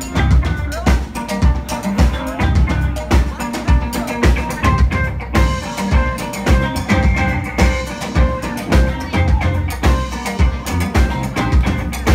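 Live rock band playing through a club PA: two electric guitars over a drum kit keeping a steady beat.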